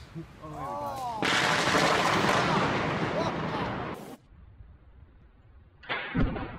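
Thunderclap from a close lightning strike: a sudden loud crack about a second in that rolls on for nearly three seconds, then cuts off.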